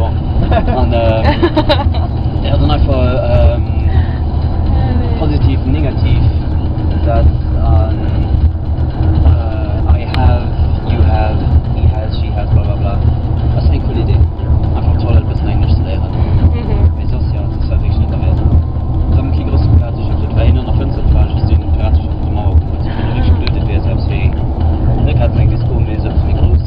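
Steady low rumble of a moving vehicle heard from inside the cabin, with voices and music over it.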